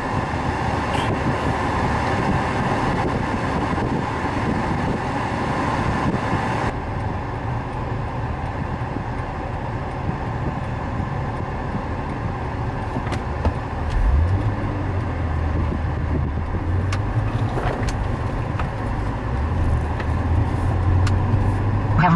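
Road and engine noise inside the cabin of a moving third-generation Acura TL: a steady rush of tyre and wind noise. The hiss lessens about a third of the way in, and a low engine drone comes in about two-thirds of the way through.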